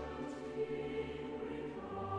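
Late-Romantic choral music: a mixed four-part chorus with orchestra singing sustained chords of a mournful, slow passage.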